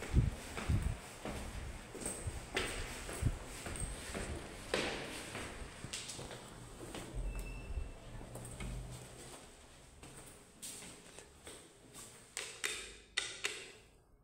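Footsteps on stairwell stairs and landings: an irregular run of steps and light knocks, with a few sharper clicks near the end.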